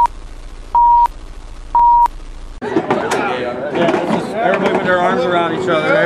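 Film-leader countdown sound effect: three short steady beeps about a second apart over TV-static hiss. Then, from about halfway in, men talking and laughing.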